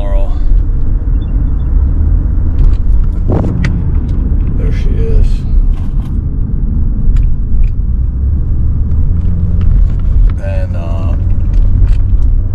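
Steady low rumble of a car, with a few light clicks and rattles over it.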